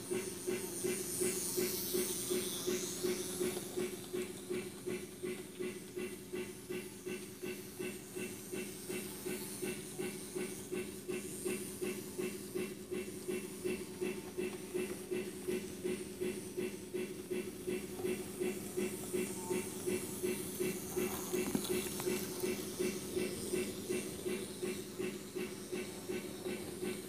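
Model railroad sound-effects unit (MRC Sound Station) playing an even, repeating hissing beat over a steady hum.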